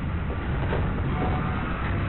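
The machinery of a pig gas-stunning chamber gives a steady low rumble, like a train, with a metallic knock about a third of the way in, as the cage of pigs is moved.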